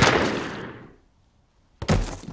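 The echoing tail of a gunshot dies away over about a second, then silence. A second, shorter sharp bang follows near the end.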